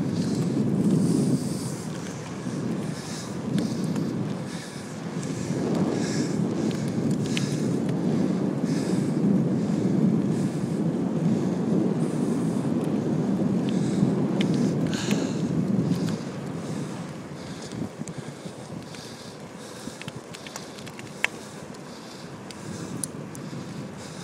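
Wind buffeting the microphone of a camera carried on a moving bicycle, a steady rushing rumble that eases about two-thirds of the way through, with a sharp click near the end.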